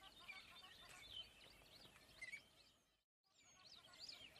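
Near silence with faint, scattered bird chirps from a background ambience bed. The sound drops out completely for a moment just after three seconds.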